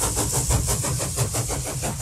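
An engine running with a fast, even beat, a low rumble under a hiss.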